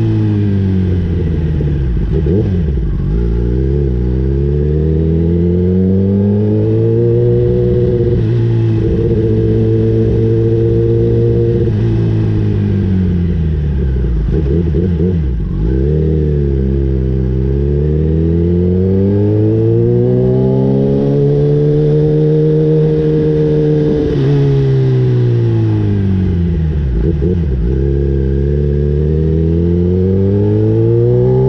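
Kawasaki ZX-10R inline-four engine heard from on the bike at low road speed. Its pitch sweeps smoothly down as the bike slows and back up as it pulls away, three times over, with steady stretches between.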